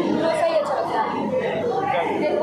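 Indistinct chatter of several voices in a crowded canteen hall.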